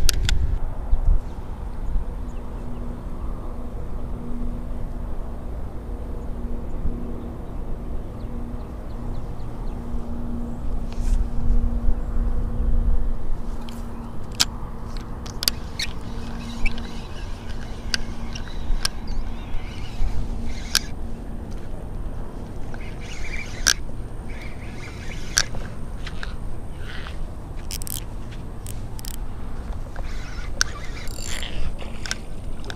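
Daiwa BG spinning reel being cranked, its rough hum pulsing with the turns of the handle for most of the first twenty seconds; the reel sounds bad because its bearings were damaged when it was dropped on concrete. A low rumble of wind on the microphone sits under it, with scattered clicks in the second half.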